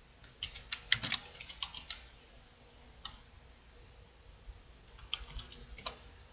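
Typing on a computer keyboard: a quick run of keystrokes from about half a second in, a single tap near the middle, and a second short run near the end.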